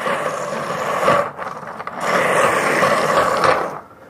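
A bowling ball spun by hand in a bowling spin-practice base, making a steady rolling, scraping noise. Two spins: the first lasts about a second, the second starts about two seconds in and fades out near the end.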